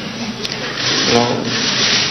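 A steady rough hiss-like noise with a few sharp clicks, and a man's short 'ну' about a second in.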